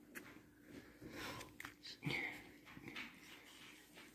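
Faint handling of trading cards: cardstock cards sliding and tapping against each other as they are flipped through, a few soft clicks and brief rustles.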